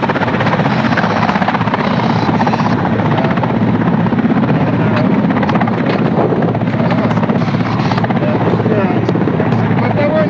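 Helicopter rotors and turbine engines running close by: a loud, steady drone with a fine, fast chop. Faint voices come through underneath.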